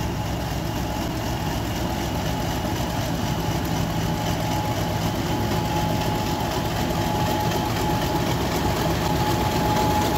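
British Rail Class 50 diesel locomotive's English Electric 16-cylinder engine running as the locomotive rolls slowly in along the platform, growing gradually louder as it draws near, with a steady whine above the engine note.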